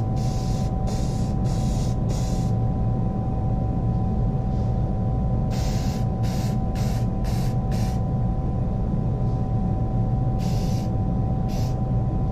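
Aerosol spray-paint can hissing in short bursts: a quick run of squirts in the first couple of seconds, another run around six to eight seconds in, and a couple more near the end. Underneath is a steady low machine hum with a faint whine.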